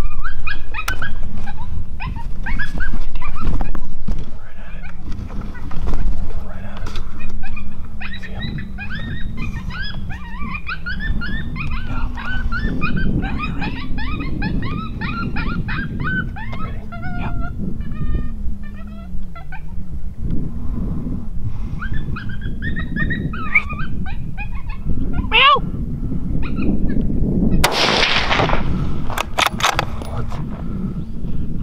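Canine-like yips and whimpers, many short rising-and-falling squeals, as played by an electronic predator call to bring in a coyote. Near the end comes a loud sudden burst of noise, then a few sharp cracks.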